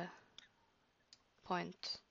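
Computer mouse clicks: a couple of faint, sharp clicks about a second apart as the mouse button works the gradient tool, with a brief vocal sound and another click near the end.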